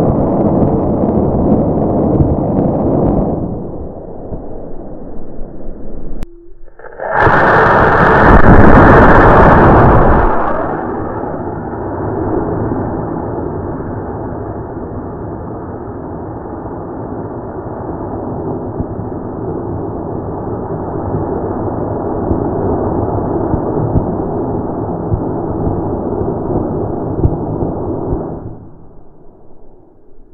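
Black-powder model rocket motor firing close to the microphone: a sudden loud rushing burn lasting about three seconds, starting about seven seconds in. Steady rushing noise runs before and after it.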